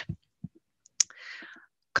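A single sharp click about a second in, the click that advances the presentation slide, followed by a short, soft intake of breath before speech resumes.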